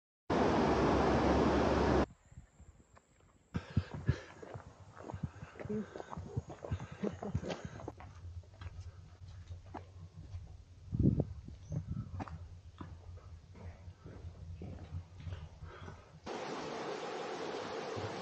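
Steady rushing noise at the start and again near the end. In between, footsteps and knocks on a stony trail, with faint voices.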